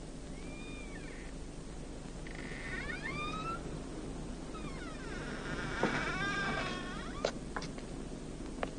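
Wooden door's hinges creaking in a series of squeaky rising and falling glides as the door is turned open and pushed wide, with a thump about six seconds in and a few light clicks near the end.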